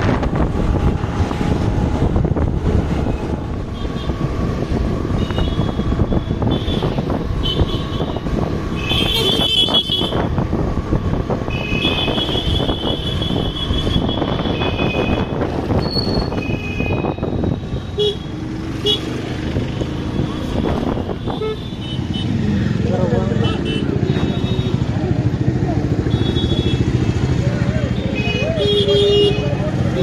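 Riding on a motorbike in road traffic: a steady rumble of the engine and wind, with vehicle horns beeping several times, the loudest about nine and twelve seconds in and again near the end.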